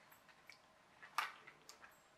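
Faint clicks and rustles of a small plastic ESC and its wires being handled, with a few separate light ticks, the sharpest just past a second in.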